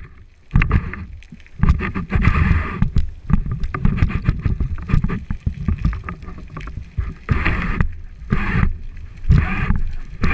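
Underwater noise from a camera mounted on a speargun: water rushing over the housing and handling noise as the diver moves, an uneven low rumble with several louder rushing bursts, strongest toward the end.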